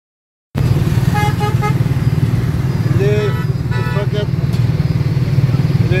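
Motorcycle engine running steadily under the rider, starting about half a second in. Three short horn beeps sound about a second in, followed by more honking and people's voices of a busy street from about three seconds on.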